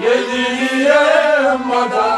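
Singing of a Kashmiri Sufi song, the voice holding and bending one long chanted phrase. A soft low beat runs underneath it about twice a second.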